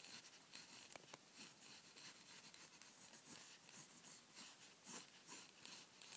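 Pencil scratching faintly on paper in a run of short, irregular strokes, sketching a circular outline.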